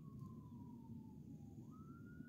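Near silence: faint background noise with one thin, faint tone that slides slowly downward, then jumps back up near the end and begins rising again.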